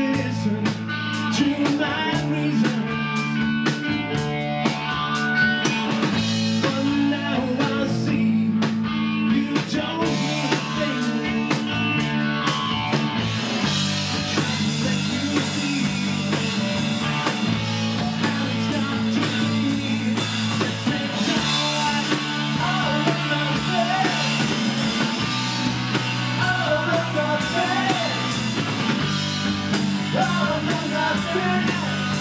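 Live rock band playing: electric guitars, bass and drum kit, with a male lead singer.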